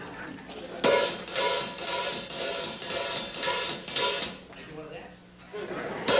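Music starts sharply about a second in, pulsing about twice a second, and dies away before the five-second mark, with voices under it.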